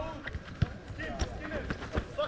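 Faint shouts of soccer players across the pitch, with one sharp thump of a football being kicked a little over half a second in.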